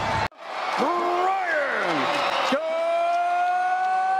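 A ring announcer's voice stretches words into long, drawn-out calls over a cheering arena crowd. The last call is one held note, rising slightly in pitch for about two seconds, as the fight's result is announced.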